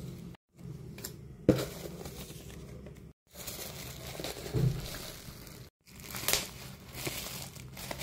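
Plastic bubble wrap crinkling as it is lifted and squeezed by hand, with a few sharp crackles spread through.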